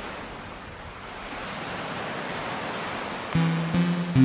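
Steady rushing of ocean waves, a sound effect. About three seconds in, music enters with a few loud held notes.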